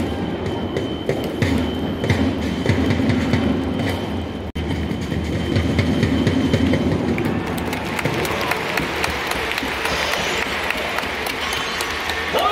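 Baseball cheering-section taiko drums and snare drum beating a steady rhythm, with a thin high electronic whistle tone held through the first half. About two-thirds of the way through, crowd noise swells over the drumming.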